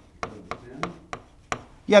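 Pen tapping on the glass of a touchscreen whiteboard while writing a word: a string of sharp, irregular taps, about six in under two seconds.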